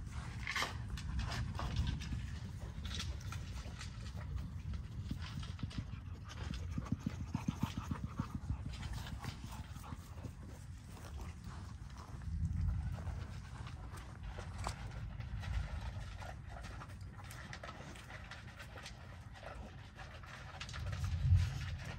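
American bully dogs playing and scuffling, panting, with scattered taps and scrapes of paws on the ground. A quick run of rhythmic panting comes about a third of the way in.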